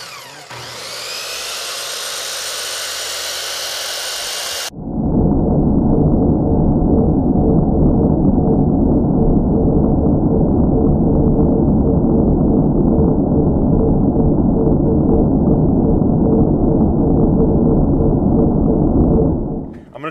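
Circular saw running, its motor whine rising as it spins up. About five seconds in the sound switches abruptly to a much louder, dull, muffled roar, which stops just before the end.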